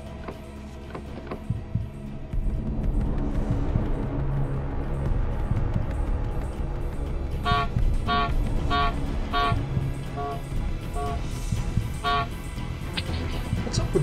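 Car horn sounding in short blasts, heard from inside the car: four quick ones about halfway through, then more spaced out, over a low steady rumble. The car seems to be acting up on its own, to the driver's puzzlement.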